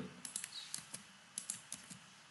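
Computer keyboard keys clicking faintly in two short runs of a few presses each, one near the start and another past the middle.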